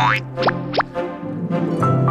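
Light background music with cartoon sound effects: a rising swoop at the start, then two quick short upward swoops close together about half a second in.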